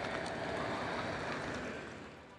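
A car driving along a street: a steady rush of tyre and road noise that slowly fades toward the end.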